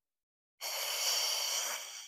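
A woman's long, breathy exhale while holding a core exercise, starting about half a second in and fading near the end.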